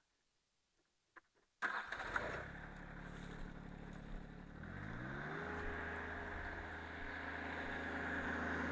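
Rural King RK24 compact tractor's diesel engine running, coming in about a second and a half in after near silence. Around five seconds in the engine speed rises and settles at a steady higher pitch.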